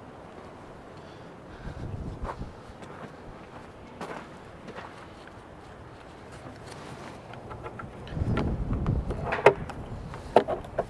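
Hands working a plastic filter cover on a skid steer's cab: low rumbling bumps and a few sharp plastic clicks near the end.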